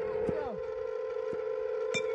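Onewheel electric skateboard hub motors spinning their upturned tyres, a steady whine, with a short click near the end.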